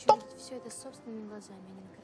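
A man's voice says one short word, then only a faint, low murmur of voice.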